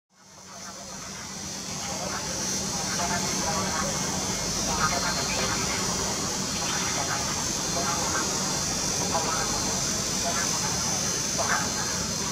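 Station public-address announcement, a voice speaking over the platform loudspeakers, with a steady high hiss underneath. The sound fades in over the first second or two.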